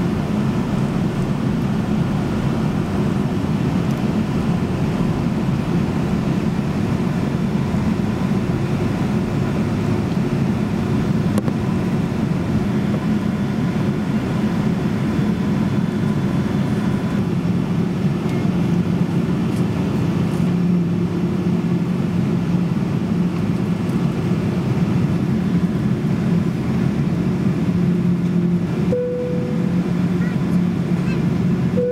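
Steady cabin noise of a Boeing 777-200ER taxiing, its engines at taxi power giving a constant low drone, heard inside the cabin. A cabin chime sounds near the end.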